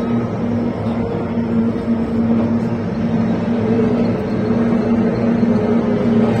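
Kyotei racing boats' two-stroke outboard motors running at speed, a loud steady drone that holds nearly one pitch with slight wavers.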